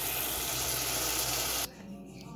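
Shrimp in a spicy sauce simmering and sizzling in a saucepan on the stove, a steady hiss that cuts off suddenly near the end.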